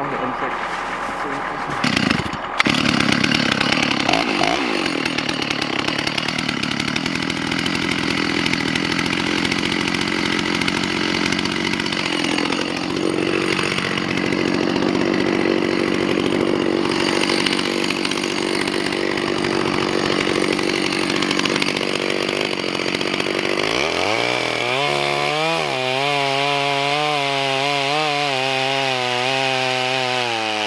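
Stihl chainsaw running, with a knock about two seconds in. In the last several seconds it is cutting through a cottonwood log, its note wavering up and down under load.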